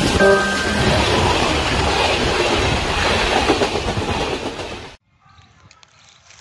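A train passing close by: steady rumble and clatter of wheels over the rails. It cuts off suddenly about five seconds in, leaving faint open-air background.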